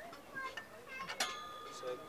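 A sharp metallic clink about a second in, ringing on briefly, as the EQ5 tripod's spreader tray knocks against the tripod's steel legs and centre bolt while being fitted, with a few lighter taps before it.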